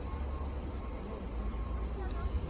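Outdoor background noise: a low, steady rumble with no distinct events.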